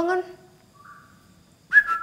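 A faint, brief high tone about a second in, then a short, louder whistle near the end that falls slightly in pitch.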